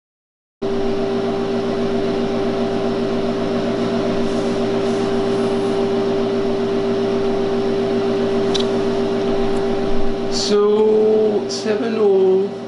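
Steady electrical hum over a fan-like hiss from the bench equipment powering a vacuum-tube logic module, starting about half a second in, with a couple of faint clicks late on. A voice comes in near the end.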